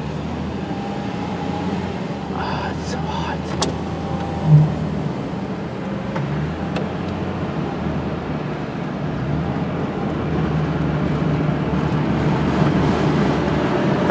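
Steady engine and road hum heard inside a moving car's cabin, growing a little louder in the last few seconds, with one short low tone about four and a half seconds in.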